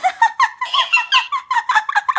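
Plush talking cactus toy giving a rapid, even run of short high-pitched squeaky chirps, about six a second.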